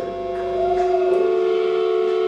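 Electric guitar holding long sustained notes through the amplifier, with a short bend rising and falling in pitch and a second held note joining about a second in.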